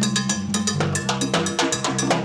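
Congas and timbales played together in a fast, busy groove: hand strokes on the conga heads and stick hits on the timbales, with sharp metallic strikes. A low bass line steps along underneath.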